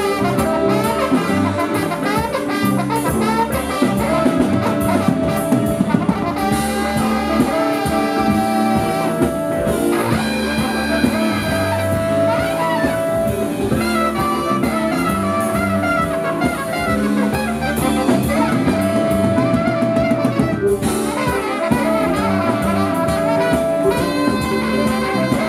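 Jazz band improvising live: trumpet, saxophones and trombone playing over electric guitars and a drum kit.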